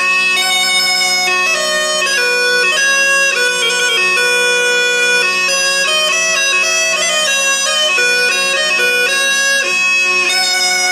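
Musette de cour, the French Baroque bellows-blown bagpipe, playing a melody over steady drones. The notes begin right at the start.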